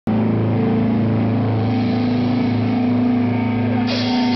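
Amplified, distorted electric guitars of a live rock band holding one sustained low chord that drones steadily, with no drums.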